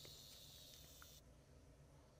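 Near silence: faint room tone and hiss, with a faint high steady tone that stops a little over a second in.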